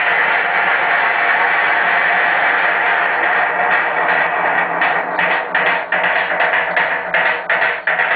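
A live electronic rock band playing loudly: a sustained wash of synthesizer and guitar for the first half, then a steady drum beat comes back in about halfway through.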